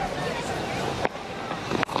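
Cricket bat striking the ball with a sharp crack near the end, over a steady murmur of crowd and ground ambience.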